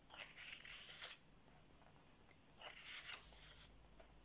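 Pages of a paperback colouring book being flipped by hand: two faint bursts of paper rustling, one at the start lasting about a second and another about two and a half seconds in.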